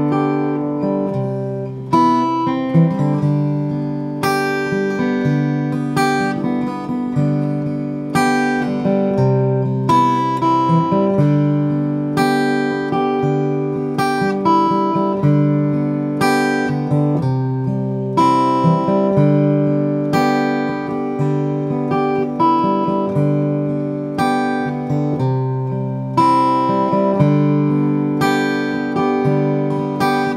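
Solo acoustic guitar strumming chords, a stroke about every second, each chord ringing and fading before the next.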